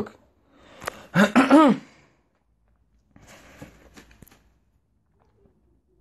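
A man's short, voiced throat-clearing sound about a second in. Faint rustling with a few clicks follows a couple of seconds later.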